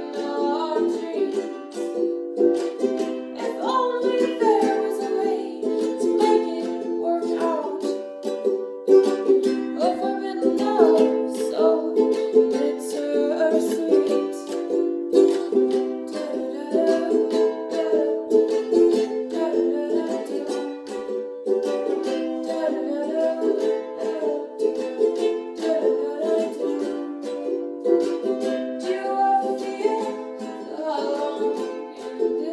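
Ukulele strummed in a steady rhythm of chords, with the echo of a small, bare room.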